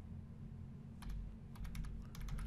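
Typing on a computer keyboard: a quick run of short key clicks starting about halfway through, as a short code is keyed in.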